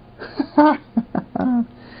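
A man's voice: a few short, indistinct spoken sounds with no clear words, mumbled or half-laughed.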